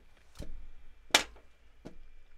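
Three short, sharp taps about three quarters of a second apart, the middle one the loudest, from hands working a tablet at a desk.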